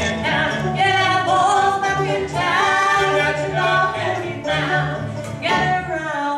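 Live bluegrass band playing a song, with a man singing the lead vocal over banjo, acoustic guitar, upright bass and fiddle. The bass notes move steadily underneath.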